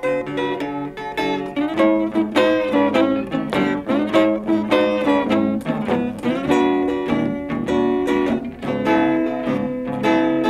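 Blues guitar instrumental break between verses, with picked single notes and chords in a steady rhythm and some notes bent in pitch.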